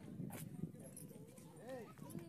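Faint voices of people talking some way off, with a few footsteps on rock.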